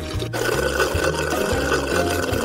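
A milkshake being sucked up hard through a drinking straw: a steady slurping noise that starts about a third of a second in and holds. Background music with a low bass line runs underneath.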